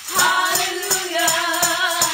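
A woman singing a gospel song into a microphone, holding one long note, while shaking a tambourine in a steady beat of about four strokes a second.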